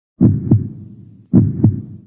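Heartbeat sound effect: two lub-dub beats a little over a second apart, each a pair of low thumps.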